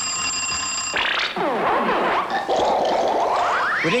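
An electronic buzzer sounds a steady, stacked tone for about a second as the game clock reaches zero, signalling time up. It is followed by a jumble of overlapping sliding tones that climb steeply near the end.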